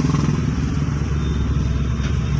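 A manual Hyundai hatchback's engine and road noise heard from inside the cabin, a steady low drone, while the driver shifts up from second to third gear.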